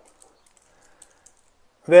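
A few faint, light clicks of a stainless steel watch bracelet and case being turned over in the fingers. A man's voice starts near the end.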